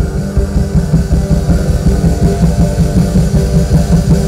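Loud live band music through a concert sound system: drums and bass come in right at the start over the guitar and carry on with a steady beat.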